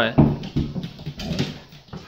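Golden retriever 'talking': short pitched vocal sounds from a dog asking to go out to pee, with a thump shortly after the start.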